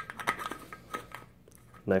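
Can seam micrometer handled against an aluminium beverage can's seam as it is moved to a new spot: a quick run of small clicks and scrapes, metal on thin can metal, mostly in the first second.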